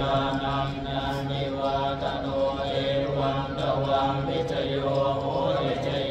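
Buddhist chanting by a group of voices, a steady monotone recitation that runs on without a break.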